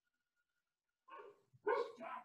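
A dog barking, a few short barks starting about a second in, the first faint and the next louder, heard over a video-call line.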